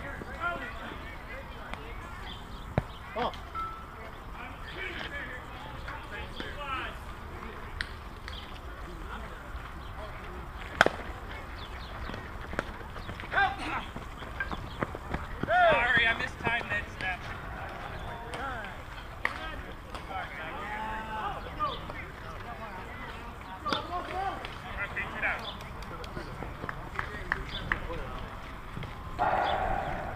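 Softball players' voices calling and shouting across the field, too far off to make out, louder in bursts near the middle and at the end. A few single sharp cracks cut through, the loudest about eleven seconds in.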